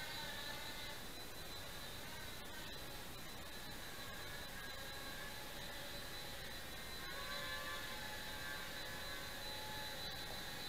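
Blade Nano QX micro quadcopter's four small brushed motors and propellers whirring faintly and steadily in indoor flight, the whine shifting in pitch about seven seconds in as the throttle changes.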